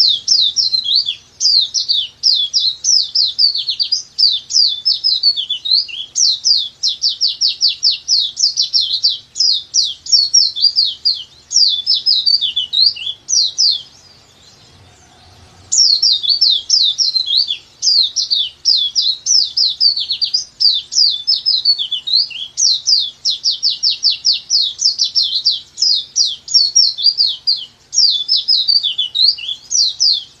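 A pleci dakbal (white-eye) singing its long 'nembak panjang' song, a fast, unbroken run of high twittering notes, each a quick downward slide. There are two bouts of about fourteen seconds each, with a pause of about two seconds between them.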